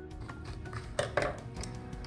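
Soft background guitar music, with two sharp metallic clicks from scissors about a second in.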